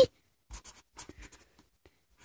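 A pen writing on notebook paper: several short, faint scratching strokes around the middle.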